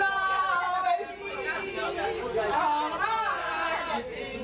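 Speech only: several women's voices talking over one another, with laughter.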